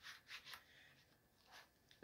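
Faint rubbing and scraping of a plastic CD jewel case being slid into its cardboard slipcase: a few short strokes early on and one more near the end.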